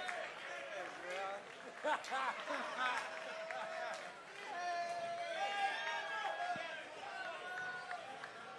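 Audience voices chattering and calling out between songs, with scattered cheers and no music playing.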